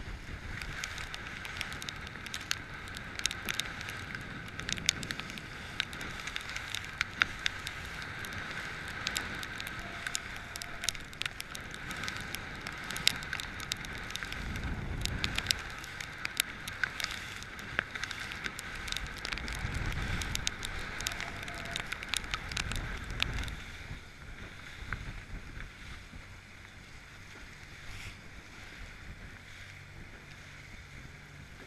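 A motorboat under way, its engine running at a steady pitch, with water splashing and slapping against the hull and gusts of wind rumbling on the microphone. The whole sound drops noticeably in level near the end.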